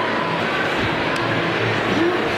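Steady wash of ice-rink noise at a fairly high level, with no single sound standing out.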